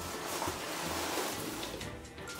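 A cardboard box rustling and scraping as a husky shoves its head into it and pushes it along a wooden floor. The sound is a steady, noisy scuffing that lasts nearly two seconds.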